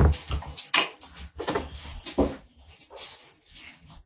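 Shower water running, a faint steady hiss, under irregular rustling and handling noises and a few brief murmurs.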